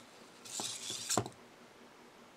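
Small servo motors of an EMO desktop robot whirring as it steps forward on the table, ending in a sharp click as it stops a little past a second in; the stop comes from its front proximity sensor detecting the box in front of it.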